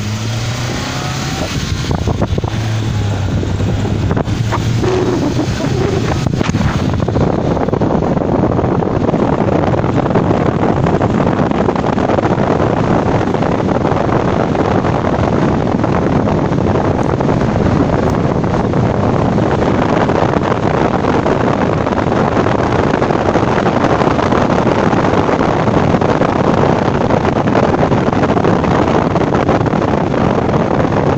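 A car driving along a road, heard from inside: the engine's hum is plain for the first seven seconds or so, then steady loud wind and road noise covers it as the car picks up speed.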